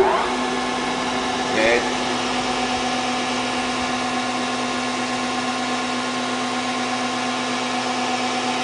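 Blanchard 16-inch rotary surface grinder running: a steady motor and spindle hum with a strong low tone and several fainter tones over a hiss. A short higher-pitched sound cuts in briefly about a second and a half in.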